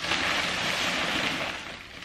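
Bubble wrap and plastic packaging rustling steadily as it is pulled away by hand, dying down near the end.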